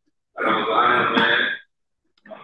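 A man's voice over a microphone: one vocal stretch of a little over a second, starting about a third of a second in.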